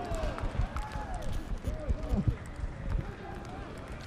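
Field and stadium ambience at a rugby league match: scattered distant voices calling and shouting, several short rising-and-falling calls in the first couple of seconds, over a steady outdoor background.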